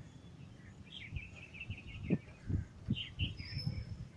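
Small birds chirping: a quick run of high chirps about a second in and another cluster near the end, over irregular low thumps and rustling.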